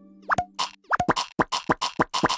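Cartoon sound effects: two quick rising plops, then a rapid run of short sniffs, about six a second, as the larva draws dandelion seeds up its nostrils.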